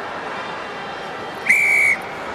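A rugby referee's whistle: one short, steady blast about a second and a half in, blown at the scrum to award a free kick for a player not engaging. It sounds over the steady noise of the stadium crowd.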